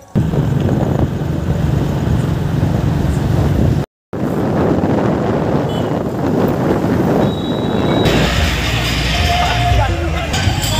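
Motorbike running on the move, with heavy wind rumble on the microphone; the sound cuts out briefly about four seconds in. Near the end, loud music and crowd noise take over.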